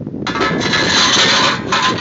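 Steel parts of a home-built rocket stove scraping and rubbing against each other as a grill is put into the stove's feed opening, a rasping scrape lasting about a second and a half.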